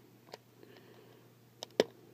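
Plastic parts of a Transformers Masterpiece figure clicking as they are pressed together to snap into place. There is a faint click about a third of a second in, then a sharper click near the end.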